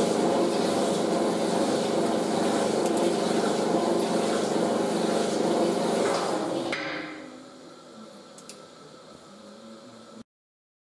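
Metal shaper running, its ram stroking the cutting tool back and forth over a metal block in the vise, with a steady gear whine. About seven seconds in the machine stops and the sound drops to a faint hum.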